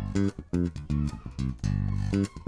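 Fazley Mammoth seven-string active bass guitar being played: a line of short plucked notes, then one note held longer near the end. The treble on its active EQ is boosted.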